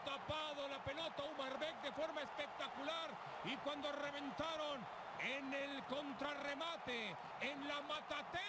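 Spanish-language TV football commentator talking steadily over the match broadcast, playing quietly.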